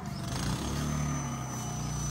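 A vehicle engine running steadily, with a faint high-pitched whine above it.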